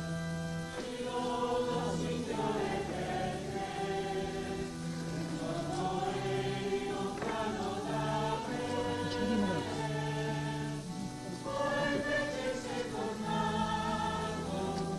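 Choir singing a hymn in long, held notes.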